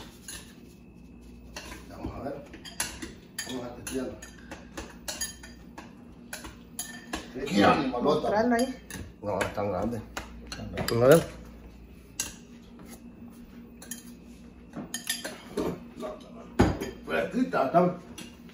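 A metal spoon clinking and scraping against a ceramic bowl as clam meat is stirred in sauce, in many small irregular clicks. A short voice or two breaks in near the middle.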